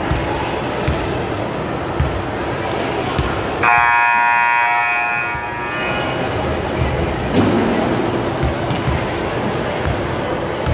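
An electronic buzzer sounds one steady tone for about two seconds, starting a little under four seconds in, over the echoing chatter of a gymnasium and a few low thumps.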